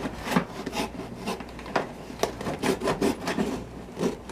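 Cardboard box being opened by hand: a string of short, irregular scrapes and rustles of cardboard rubbing on cardboard as the end flap is pried open.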